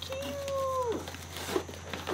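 Packing material rustling inside a cardboard shipping box as it is unpacked by hand. Before it comes a single drawn-out high vocal note, about a second long, that drops in pitch at the end.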